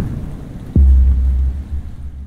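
Logo sting sound effect: a quick downward pitch sweep drops into a sudden deep bass boom about three-quarters of a second in. A low rumble follows, holds for about a second and then fades.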